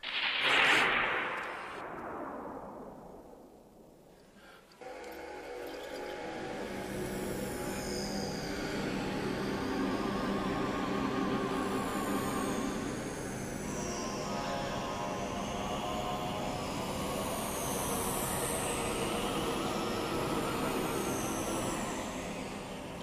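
A loud whoosh sound effect at the start that falls away over about four seconds. Then a synthesized film score sets in and holds steady, with high sliding tones and a wavering note.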